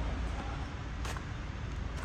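Steady low rumble of wind buffeting the microphone, with a faint click about halfway through.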